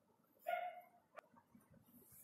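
A dog's faint, short whimper about half a second in, followed by a single faint click.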